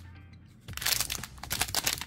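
Crinkling of a foil trading-card pack as it is handled, starting under a second in, over background music.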